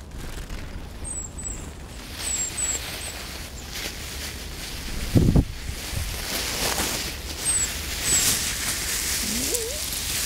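Great tits giving short, high, thin calls several times over a steady rustling hiss. A dull thump about five seconds in is the loudest sound.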